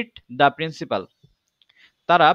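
A man's voice speaks a few short syllables in the first second, followed by a pause with a few faint clicks.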